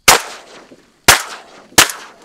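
Three shotgun shots fired at incoming teal, the second about a second after the first and the third quickly after that, each very loud with a short ringing tail.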